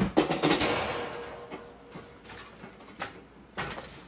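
A large plastic-wrapped cardboard box is set down on a steel slatted table. There is a loud thump and crinkle of plastic film, with a faint ringing tone that dies away over about a second. Near the end come a couple of shorter knocks and rustles as the box is shifted on the table.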